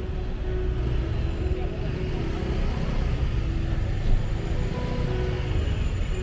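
Street traffic: motorcycle and car engines running in a steady low rumble, with music playing over it and a brief louder bump about four seconds in.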